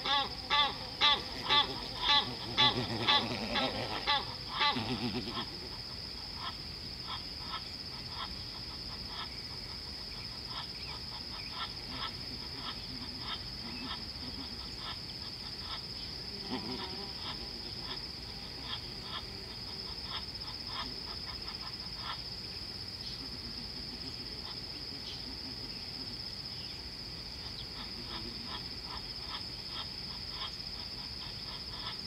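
Steady high-pitched drone of insects at a watering hole. Over the first five seconds an animal gives a loud series of rhythmic calls, about one and a half a second, which then stop.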